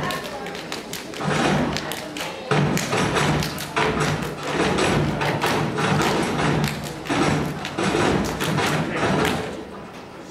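A step team stomping and clapping in unison: a fast, uneven run of sharp thuds and claps that stops near the end.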